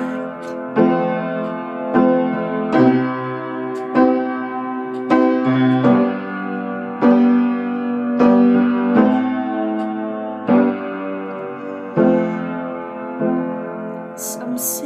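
Keyboard playing slow, sustained chords as an instrumental passage, a new chord struck about once a second.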